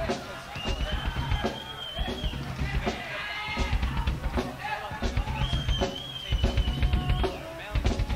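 Live drum kit played loosely, irregular bass drum and snare hits rather than a steady beat. A high, steady whistle is held for over a second twice.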